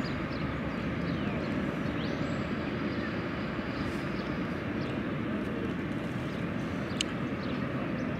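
Steady outdoor background noise, an even hum with no distinct events, with one brief sharp tick about seven seconds in.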